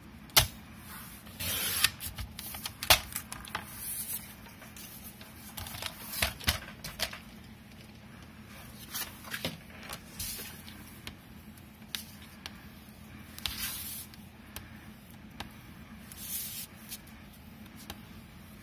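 Paper crafting at a table: kraft cardstock handled on a paper trimmer and a cutting mat, a run of scattered clicks, taps and short paper swishes, busiest in the first few seconds.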